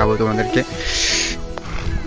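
Background music with steady held tones, with a man's voice briefly near the start and a short hiss about a second in.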